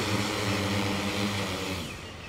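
Agricultural spraying multirotor drone hovering low over the field: a steady propeller hum that grows fainter near the end as the drone comes down.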